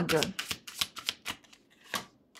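Tarot cards being handled and dealt from a deck: a quick run of light card snaps and slides as cards are pulled off and laid down on the table.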